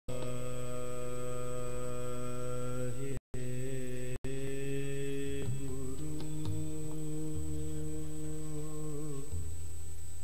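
Sikh kirtan: a man singing long held notes into a microphone over sustained accompaniment, the pitch moving to a new note a few times. The sound cuts out completely for a moment twice, about three and four seconds in.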